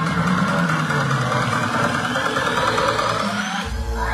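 Electronic dance music mixed on a DJ controller: a build-up with a rising sweep and the deep bass cut out, then the drop lands with heavy bass beats near the end.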